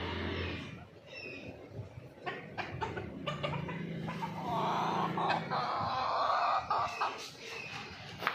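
A Yokohama rooster crows: one long call beginning about three seconds in, with a short break before its final part near seven seconds.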